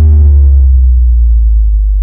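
Loud, deep synthesized bass tone of a logo intro sting, sliding downward in pitch. Its brighter overtones fade about two thirds of a second in, leaving a steady low hum.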